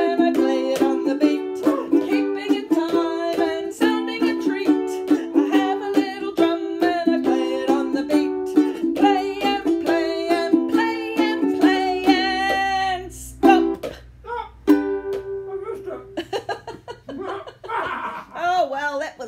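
Ukulele strummed in a steady rhythm of chords, with a woman singing a children's song along with it. About three-quarters of the way through, the song breaks off, leaving a few sharp knocks and scattered strums.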